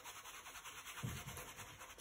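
Faint scratchy rubbing of a stiff-bristled paintbrush scrubbed over acrylic paper, working white acrylic paint into blue, with a soft low thud about a second in.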